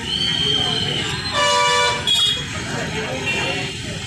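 A road vehicle's horn honks about a second and a half in for roughly half a second, then gives a brief second toot, over street chatter and traffic noise.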